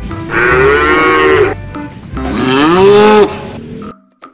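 A cow mooing twice, each a long call of about a second with a slight rise and fall in pitch, the second a little louder; a recorded moo sound effect.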